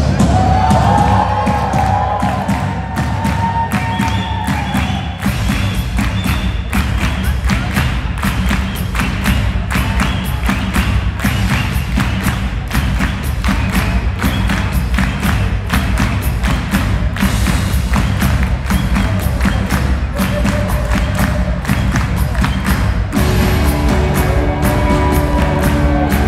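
Rock band playing live: drum kit, bass, electric guitars and keyboard in an instrumental passage with a steady beat and no singing.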